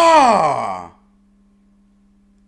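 A man letting out a long open-mouthed "ahh" groan that falls in pitch and fades out about a second in.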